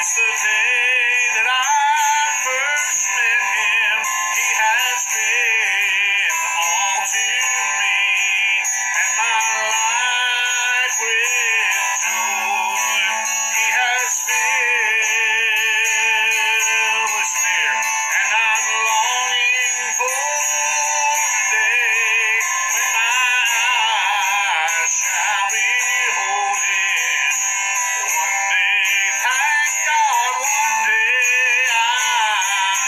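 Man singing a solo song with a strong, wavering vibrato. The sound is thin, with almost no bass.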